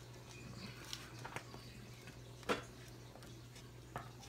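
Faint sound of a wooden spoon stirring thick, hot rice pudding in an enameled cast-iron pot: scattered soft clicks and scrapes, with one sharper knock of the spoon about two and a half seconds in, over a steady low hum.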